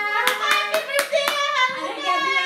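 Five quick hand claps, about four a second, over a young woman's voice that carries on throughout.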